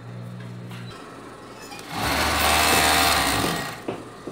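Overlock (serger) sewing machine running in one burst of about a second and a half, starting about two seconds in, stitching around the edge of a small fabric circle.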